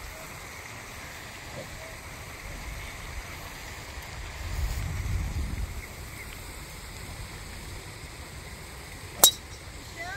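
A golf club strikes a ball off the tee once, a single sharp crack about nine seconds in, with quiet outdoor background before it. A brief soft low rumble comes midway.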